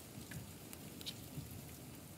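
Faint steady rain, with a few scattered ticks of individual drops.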